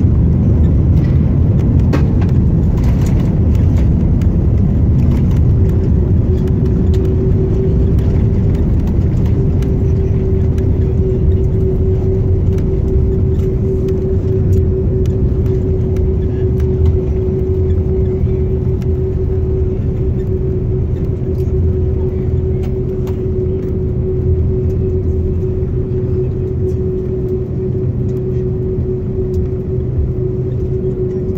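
Cabin noise of an Airbus airliner rolling out on the runway just after touchdown, spoilers up. A loud low rumble of engines and wheels slowly eases as the aircraft slows. A steady hum comes in about six seconds in and holds.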